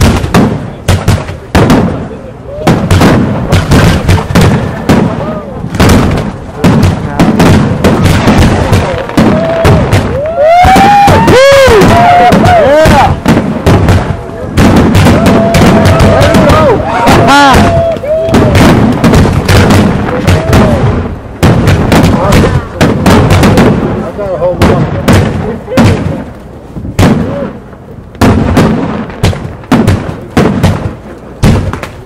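Loud aerial firework shells bursting in a fast, continuous barrage of bangs and booms. Rising and falling whistling tones come through near the middle.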